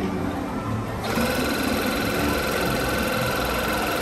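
Electric balloon inflator switching on about a second in and running with a steady motor hum, blowing air into a clear bubble balloon.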